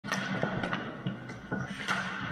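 Ice hockey sticks and puck clacking, four sharp knocks in two seconds, with skate blades scraping the ice, over a steady high hum in an echoing ice rink.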